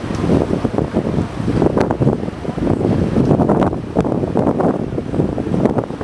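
Wind buffeting the microphone aboard a moving boat: a loud, uneven rush that swells and dips.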